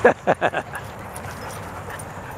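A dog giving a quick run of four or five short barks while playing, all within the first half second.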